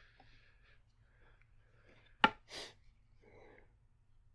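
Faint handling of a tennis overgrip being unwrapped and readied on a racket handle, with one sharp tap a little over two seconds in and a short rustle right after it.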